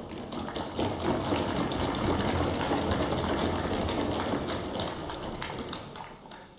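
Applause from the assembly members right after the oath, a dense patter that swells during the first second, holds, and fades near the end.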